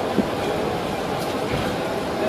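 Steady street ambience, an even wash of noise with no words, with a single click shortly after the start.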